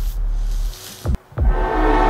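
Dramatic soundtrack from the animated short: deep booming hits, each falling in pitch, over a low drone, with sustained chords swelling in near the end.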